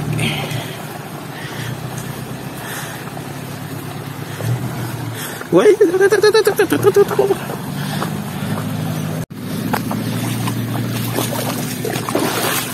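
Toyota 4x4 pickup's engine running with a steady low drone as the truck drives off, with a person laughing loudly for a couple of seconds in the middle. The sound cuts out for an instant just past nine seconds.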